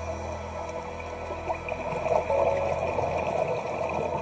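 Scuba diver's exhaled air bubbling from a regulator, heard underwater as a crackly, bubbling rush that swells about two seconds in.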